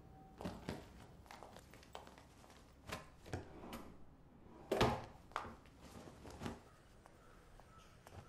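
Scattered soft thuds and taps of a person moving about a quiet room, the loudest about five seconds in.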